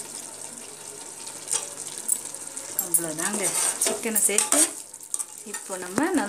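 Steel spoon stirring raw chicken pieces into frying masala in a metal pot, with a steady sizzle and repeated clicks and scrapes of the spoon against the pot. A voice is heard briefly in the middle.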